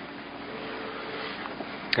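Steady hiss of an off-air FM radio recording, with no speech over it.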